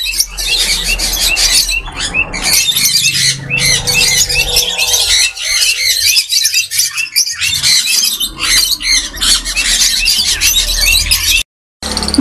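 Many caged parrots chirping and squawking at once, a dense stream of short, high calls over a low steady hum. The sound cuts out for a moment near the end.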